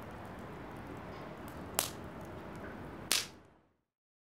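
Wood fire burning in a fire pit: a steady crackle with two sharp, loud pops, about two and three seconds in, before the sound fades out.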